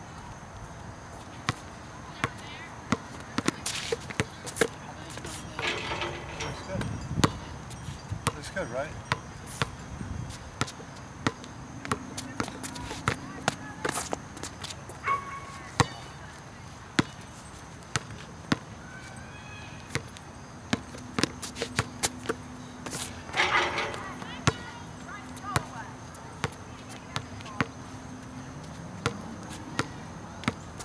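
A basketball being dribbled on an outdoor asphalt court: sharp bounces at uneven spacing, sometimes in quick runs.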